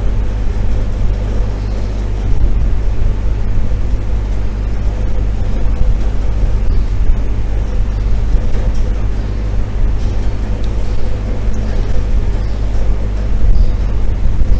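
Steady low hum and rumble with a few faint steady tones above it, unchanging throughout: continuous background noise with no events standing out.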